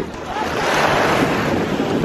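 Small waves washing over sand in shallow sea water at the shoreline, the wash swelling about half a second in, with wind rumbling on the microphone underneath.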